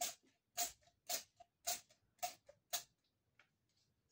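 Sharp, evenly spaced ticks, about two a second, each followed by a fainter click. They stop about three seconds in.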